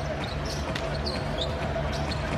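Basketball being dribbled on a hardwood court, a series of short bounces over the steady background noise of an arena crowd.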